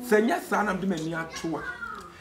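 Speech: a person talking, with the pitch of the voice rising and falling.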